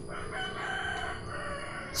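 A rooster crowing: one long call lasting about a second and a half, fainter than the nearby voice.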